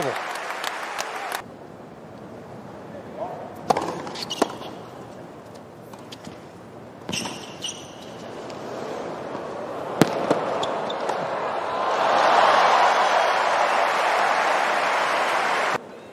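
Tennis ball struck by rackets during a stadium rally: single sharp hits a few seconds apart, with a brief shoe squeak. Near the end, crowd cheering swells loudly and holds for a few seconds before cutting off suddenly.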